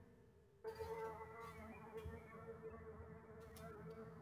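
Faint buzz of a flying insect on one steady pitch. It drops away at the start and comes back under a second in.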